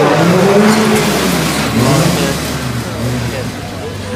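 Racing car's engine revving hard as it accelerates along the sprint course, the pitch rising and falling, loudest at the start and easing a little after, with a commentator's voice over the public address.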